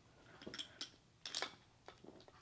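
A few faint, light clicks from small toy train cars being handled and set down on a wooden track.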